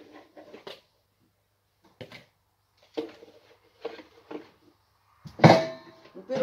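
Kitchen bowls and plastic containers being handled: a few light knocks and clatters spread out, then a louder clatter with a brief ring near the end as a bowl is set into a wall cupboard among pots.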